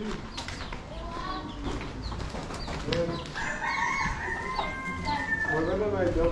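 One long call of about two seconds, beginning a little past halfway through, held level and then falling away at the end, in the manner of a farmyard bird's crow.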